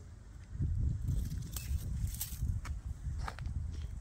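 Footsteps on dry leaf-and-bark mulch, with a few sharp clicks among them, over a low rumble on the microphone.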